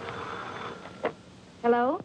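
A sheet of paper pulled out of a typewriter's roller, a short rasping zip, followed by a single sharp click about a second in.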